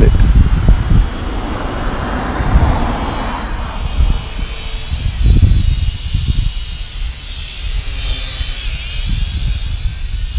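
Small radio-controlled quadcopter's electric motors and propellers buzzing in flight, with a faint high whine that wavers in pitch as it manoeuvres. Underneath is a steady low rumble of wind on the microphone.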